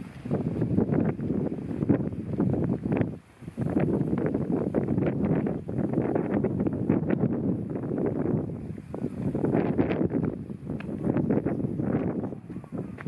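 Wind buffeting the camera's microphone, a heavy rumbling gusty noise with a brief lull about three seconds in.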